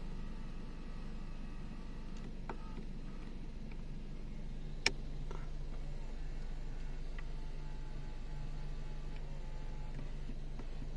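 Faint, steady low hum inside a car's cabin, with one sharp click about five seconds in.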